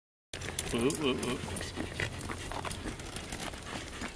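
Pembroke Welsh Corgi panting, starting just after a brief silence, while sitting in a rolling cart; she is panting from exertion and is meant to rest until it stops.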